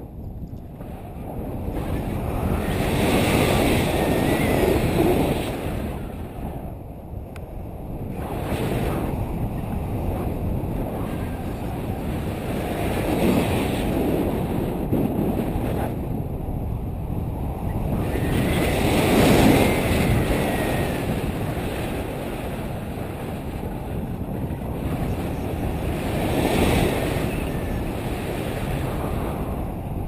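Wind rushing over the microphone of a selfie-stick camera during a tandem paraglider flight, a continuous noisy rush that swells louder several times.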